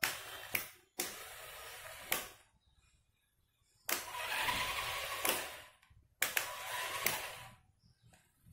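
Small DC gear motors of a homemade floor-cleaning car running in four short bursts, each one to two seconds long, switched on and off with a sharp click at the start and end of each.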